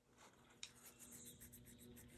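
Near silence: faint room tone with a low steady hum, one soft click about half a second in and a faint rustle after it.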